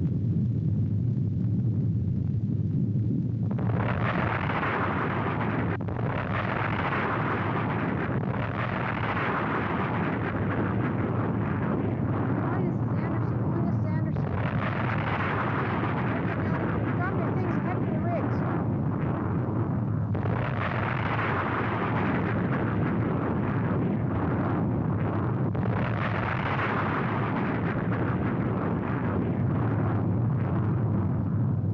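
Deep continuous rumble of a volcanic eruption. A higher roaring hiss sets in about three and a half seconds in and surges in several waves over it.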